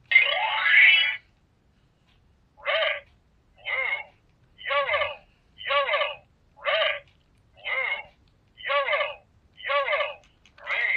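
Handheld electronic memory-game cube toy sounding a burst in the first second, then, after a pause, a steady run of short pitched electronic sounds, each about half a second, roughly one a second, as a memory sequence is played out.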